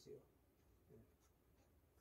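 Near silence: room tone, with the tail of a spoken word at the very start.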